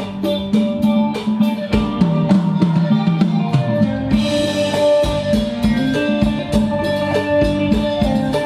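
Live band playing Thai ramwong dance music on electric guitars, bass and drum kit, with a steady drum beat; cymbals come in about halfway through.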